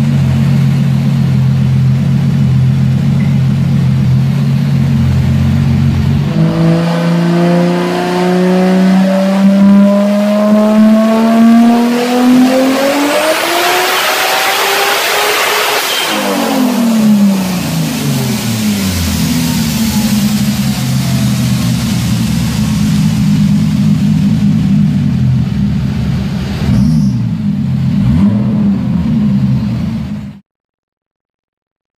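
Turbocharged Toyota Supra engine on a chassis dyno making a full-throttle pull worth 959 horsepower at the wheels. It runs steadily at first, then about six seconds in climbs in one long rise in pitch, with a loud rush of noise at the top. It then drops sharply off throttle and settles back to a steady run.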